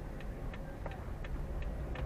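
Car's turn-signal indicator ticking evenly, about three clicks a second, over the low hum of the engine and tyres at slow speed.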